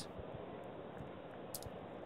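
A few faint, light clicks over quiet room tone, the sharpest about one and a half seconds in.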